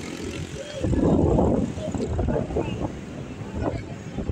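Rumble and buffeting on the microphone over a low steady drone, loudest from about a second in, with indistinct voices.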